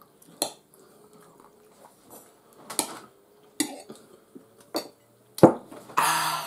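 Knives and forks clinking and scraping on ceramic dinner plates while eating: a handful of separate sharp clinks, the loudest one just before the end.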